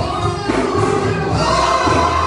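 A woman and a man singing a gospel song together through handheld microphones, over instrumental accompaniment with a steady beat.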